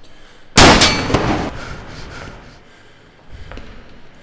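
A sudden loud bang with a metallic ring about half a second in, followed by a smaller second hit and a fading ring-out.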